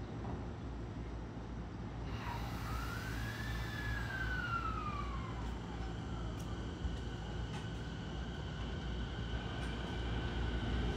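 JR East 209-series electric train pulling away from the platform: a motor whine rises and then falls in pitch over about three seconds, starting about two seconds in, over a steady low rumble.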